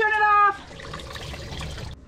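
The tail of a loud, held shout ends about half a second in. Then water gushes from a disconnected faucet supply line into a bucket under an RV kitchen sink, at strong pressure.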